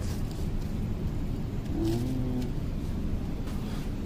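Steady low background rumble, with a short faint murmur of a voice about two seconds in.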